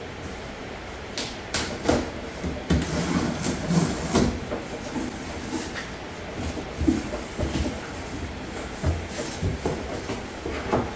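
Cardboard shipping box being opened by hand: irregular scrapes, rustles and knocks of tape and cardboard flaps, busiest about three to four seconds in.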